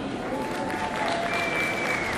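Audience applauding, many hands clapping steadily, with a short high steady tone near the end.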